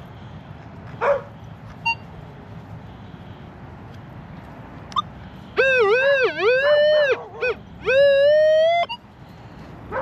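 A dog whining in two long, loud, wavering cries, the first swooping up and down and the second held with a slow rise in pitch, over the last few seconds.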